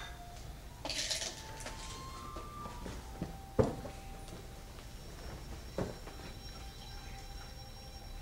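Martial artists' feet stamping on a hard floor during a kung fu form: two sharp thuds, the louder about three and a half seconds in and another near six seconds. A brief hiss of moving clothing or breath comes about a second in, with faint squeaks over a low hall background.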